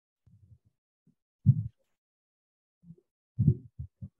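A few short, low, muffled bursts of sound picked up over a video-call line: faint ones early on, a loud one about a second and a half in, and a cluster just before the end.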